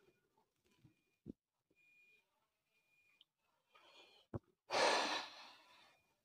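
A man exhales once into a clip-on microphone, a long breathy sigh-like breath out of cigarette smoke about five seconds in, after two faint short clicks.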